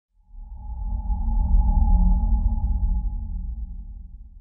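Logo intro sound effect: a deep bass rumble with a steady, higher sonar-like tone above it, swelling up over the first second and a half and then fading away toward the end.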